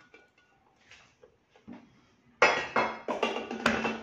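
Faint scraping as stew is spooned out of a stainless steel Thermomix bowl. About two and a half seconds in, a loud run of metallic clanks with ringing as the bowl is set back into the machine's base.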